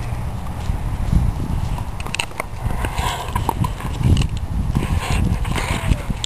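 An English Pointer biting and chewing a wooden stick: irregular clicks and crunches of teeth on wood, thickening from about two seconds in, over a steady low rumble.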